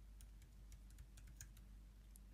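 Faint keystrokes on a computer keyboard: a run of light, irregularly spaced clicks as a line of code is typed.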